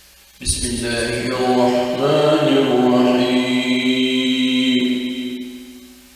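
A single voice chanting Quran recitation in melodic tajweed style: one long phrase entering abruptly about half a second in, settling into a long held note, and fading out just before the end.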